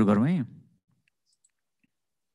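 A man's voice stops about half a second in, then near silence broken by two faint clicks.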